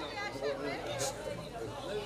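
Several men's voices talking at once, with one brief sharp click about a second in.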